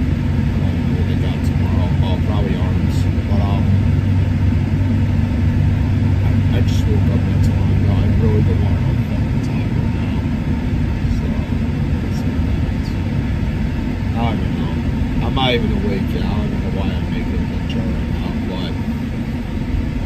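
Road and engine noise inside a moving car's cabin: a steady low rumble, with a low drone that fades away about nine seconds in.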